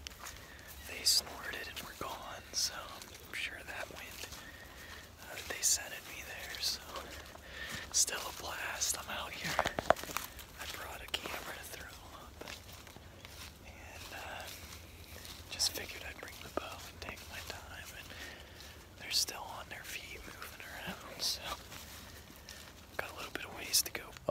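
A man whispering, in soft breathy bursts with sharp hissing consonants every second or two.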